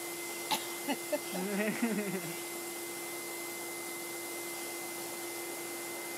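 Vacuum cleaner running steadily with a constant hum, its hose and brush attachment being used on a cat's fur.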